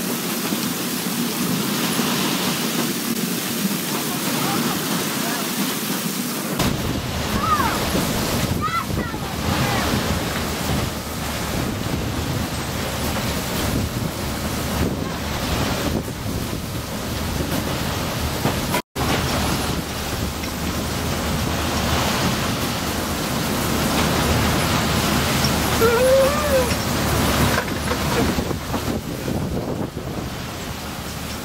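Steady rushing hiss of water spraying onto a wash plant's rubber conveyor belt as wet rocks ride along it, with the plant's machinery running underneath.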